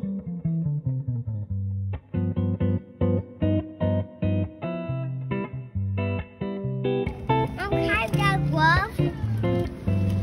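Background music of picked acoustic guitar notes at an even pace. From about seven seconds in, a woman's and a child's voices come in over it.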